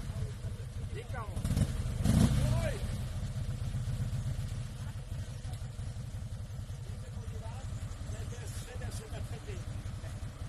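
Engine of a custom three-wheeled motor trike idling with a steady low rumble of fast, even firing pulses, rising slightly about two seconds in.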